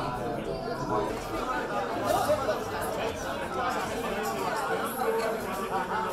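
Several people talking at once in a large hall, overlapping indistinct chatter with no single clear voice.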